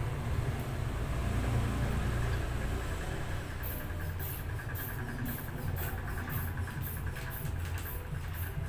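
Rubber inflation bulb of a mercury blood-pressure gauge squeezed in quick, even strokes, about two a second from halfway in, each with a short hiss of air as the arm cuff is pumped up. A steady low hum runs underneath.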